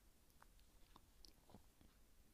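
Near silence with a few faint, short clicks from a metal crochet hook working yarn into a double crochet stitch.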